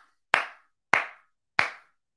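A man clapping his hands slowly, three single claps about two-thirds of a second apart, a mock slow clap of grudging approval.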